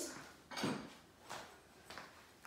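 Three soft knocks and handling sounds, a little over half a second apart, as the bowls are fetched.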